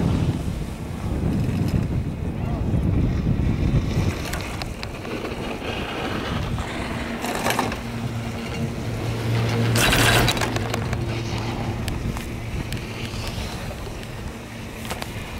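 Wind buffeting the microphone on a moving chairlift, heaviest at the start. About halfway through, the chair passes a lift tower, and the haul rope running over the tower's sheave wheels gives a couple of brief rushes and a low hum.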